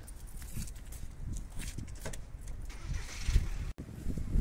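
Low, uneven rumble of street traffic, with a few light handling clicks and a short cut-out of the sound near the end.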